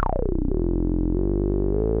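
DJX10 digital subtractive synthesizer plug-in sounding a held note. Its bright filter sweep falls sharply over the first half-second, leaving a steady, buzzy low tone that shifts slightly in timbre a few times.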